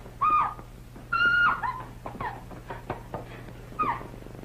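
Three short, high-pitched yelping cries, the second the longest and the last falling in pitch, with a few faint sharp clicks between them.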